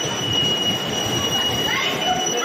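Electric bumper cars running on the arena floor: a rolling rumble under a steady high-pitched whine, with voices coming in near the end.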